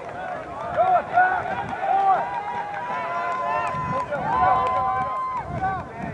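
Many overlapping voices shouting and calling across a soccer pitch during a match, distant and without clear words, some calls drawn out for about a second.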